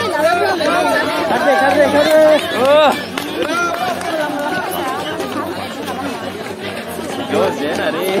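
Roadside crowd of onlookers chattering, several voices talking and calling out at once, with the loudest calls about three seconds in.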